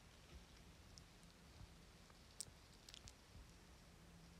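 Near silence: low room hum, with a few faint clicks a little past halfway.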